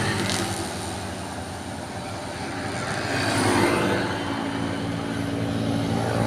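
Small motor scooter engines passing on a road: one goes by close and fades over the first two seconds, and another comes up and passes about three to four seconds in.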